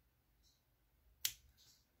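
A single sharp snip of scissors cutting through crochet thread, about a second in.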